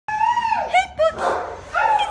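A dog whining and yelping: a long high whine that drops in pitch, two quick yelps, then another whine rising near the end.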